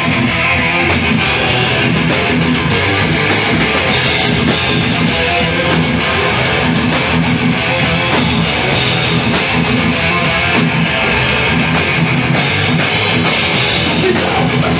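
Live thrash metal band playing an instrumental passage with no vocals: distorted electric guitars, bass and a drum kit, loud and steady.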